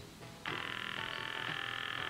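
One ring of a telephone heard down the line as the dialled number rings. It is a steady, buzzy trill about 1.8 s long that starts about half a second in, over faint background music.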